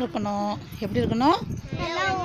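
Speech: a woman and children talking, with one short, even-pitched held vowel or call near the start.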